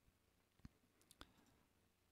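Near silence: room tone, with two faint clicks about half a second apart near the middle.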